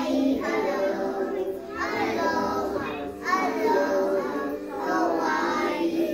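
A group of young children singing a song together, with music accompanying them.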